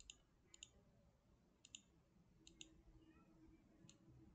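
Faint computer mouse clicks, mostly in quick press-and-release pairs, about five times against near silence.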